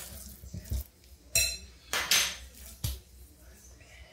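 A metal fork and a glass mixing bowl clinking and knocking as sticky dough is scraped out of the bowl and the fork and bowl are set down on a countertop: a handful of separate short hits, the loudest in the middle.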